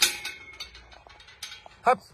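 Metal tubular gate being handled: a sharp metallic clank right at the start that rings briefly, followed by a run of lighter clicks and rattles.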